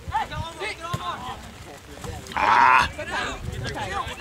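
Voices shouting across a soccer pitch during play, with one loud, drawn-out yell about two and a half seconds in.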